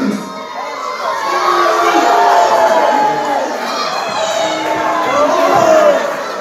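Wrestling crowd shouting and cheering, many voices yelling over one another at a steady, loud level.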